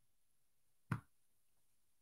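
Near silence, broken by one brief click about a second in.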